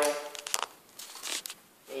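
Clarinet being handled as its barrel is fitted and twisted onto the upper joint: a few brief clicks and soft rubbing.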